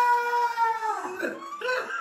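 A woman's long, high wailing cry of mock fright, held steady and then dying away about a second in, followed by short broken laughing and whimpering sounds.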